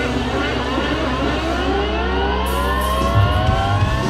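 Live instrumental rock band with electric guitars sliding upward in pitch over about three seconds to a held high note, over a steady low bass drone that drops out near the end.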